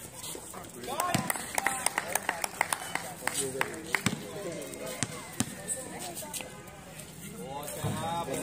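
A basketball bouncing on a concrete court: a series of sharp, irregularly spaced knocks, with men's voices calling out between them.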